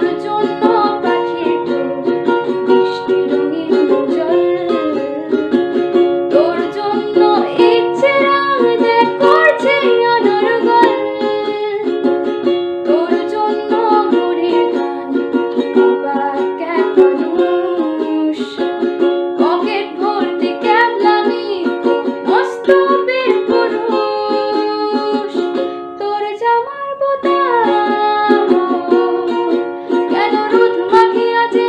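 A woman singing a Bengali song to her own strummed ukulele accompaniment.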